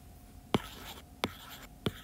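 Stylus writing on a tablet: three sharp taps about two-thirds of a second apart, with faint scratching strokes between them as figures are written out.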